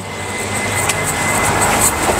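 Rushing noise of a passing motor vehicle, swelling over the first second and a half and then holding steady.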